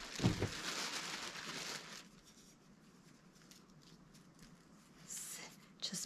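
Plastic bag rustling and crinkling for about two seconds as things are dug out of it, then a short rustle near the end.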